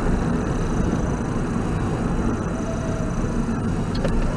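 Steady low rumble of road and engine noise inside a moving vehicle, picked up by its dashcam.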